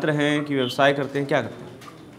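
A man's voice over a narrow, phone-like video-call line, talking for about a second and a half and then stopping.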